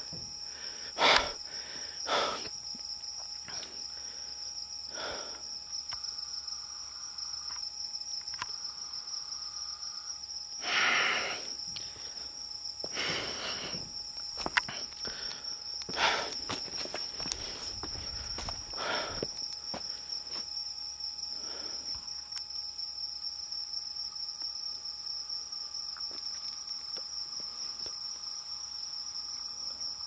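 Night insects, likely crickets, trilling in one steady high-pitched note, with a few louder rustling noises now and then.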